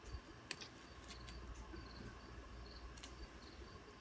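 Faint handling of a synthetic hair topper being pulled out of its protective mesh: a few sharp clicks, the loudest about half a second in. A faint high chirp repeats evenly in the background.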